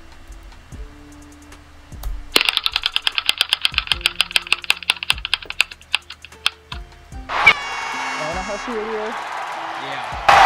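An online random-name-picker wheel ticking as it spins, the clicks quick at first and slowing as the wheel runs down. Then a recorded crowd cheers as the wheel stops on a name.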